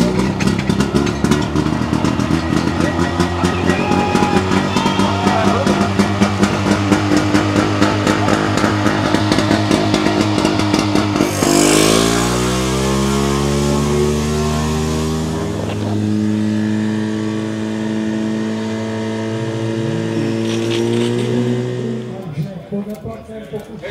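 Portable fire pump's engine running at high revs with rapid firing pulses, then throttled down about twelve seconds in: a brief hiss as the pitch falls, and it settles to a steady lower running note.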